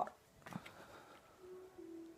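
Quiet room with a soft tap about half a second in, then faint background music with held notes stepping in pitch from about one and a half seconds in.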